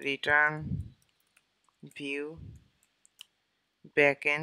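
A few scattered computer keyboard key clicks as a line of code is typed, between two drawn-out vocal murmurs that fall in pitch.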